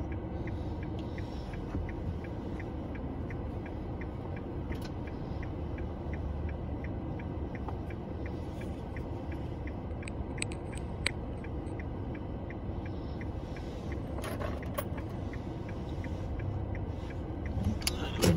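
Steady low rumble of a car heard from inside the cabin, with the turn-signal indicator ticking evenly, about three ticks a second. A few sharper clicks stand out briefly in the middle and a few seconds before the end.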